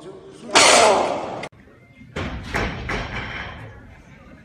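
A loud, strained shout from a weightlifter, about a second long, cut off suddenly. It is followed by a few clanks and knocks of barbell plates with voices in a large training hall.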